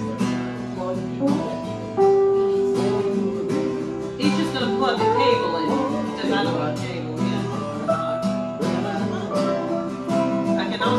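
Informal jam of strummed acoustic guitar with electric keyboard, with a long held note from about two to four seconds in.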